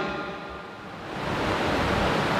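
A steady hiss of background room noise picked up by the microphone in a pause in a man's speech. It grows louder about a second in.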